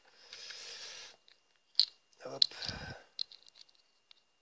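Small plastic and metal parts of an HSP RC car differential being handled and fitted together by hand: a hiss of about a second near the start, then two sharp clicks about half a second apart a little under two seconds in, followed by faint ticks.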